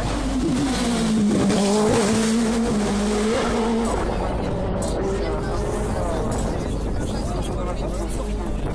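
A sport prototype race car's engine at full race pitch as it comes up the hill. The note drops sharply in the first second as the driver brakes and downshifts for the bend, then holds with small rises and falls as the car passes and fades after about five seconds.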